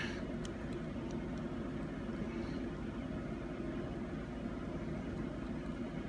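Steady low background hum, with a couple of faint ticks in the first second and a half.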